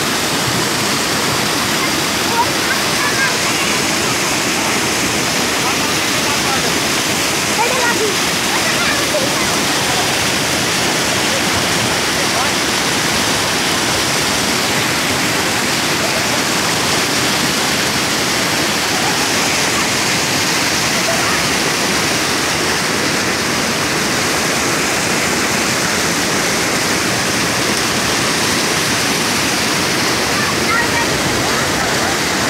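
Floodwater rushing through a breach in an earthen embankment: a steady, unbroken rush of churning muddy water cascading over the broken bank.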